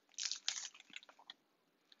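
Crinkly plastic packaging handled by hand, a few short crackles and rustles in the first second or so.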